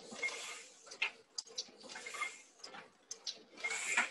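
Heidelberg Windmill platen press running: irregular clicking and clattering with recurring bursts of hiss.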